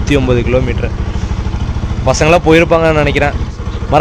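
Bajaj Pulsar NS200's single-cylinder engine idling steadily, with a man talking over it twice.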